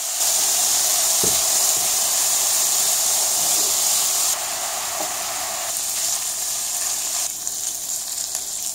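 Diced bacon sizzling as it fries in a hot pan over high heat, with a single light knock about a second in. The sizzle steps down a little in level about four seconds in and again near the end.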